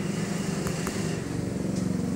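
An engine running steadily, a low even drone with two faint clicks just under a second in.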